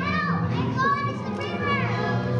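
High-pitched children's voices calling out, about four rising-and-falling cries in quick succession, over music.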